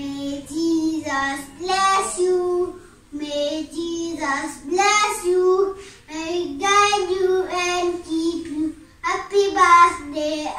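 A young boy singing a song alone, without accompaniment, in phrases with short breaks between them.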